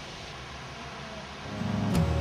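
Steady, fairly quiet outdoor background hiss with no clear event in it. About a second and a half in, acoustic guitar music fades in and grows louder.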